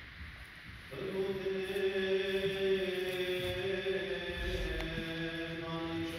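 Liturgical chanting of the Assyrian Church of the East service begins about a second in, sung in long held notes and stepping down to a lower note about halfway, with the church's echo.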